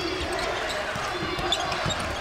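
A basketball being dribbled on a hardwood court, a few separate bounces, over the steady noise of an arena crowd.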